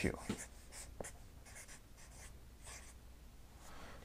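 Felt-tip marker writing on a paper flip chart pad: a series of short, faint scratchy strokes.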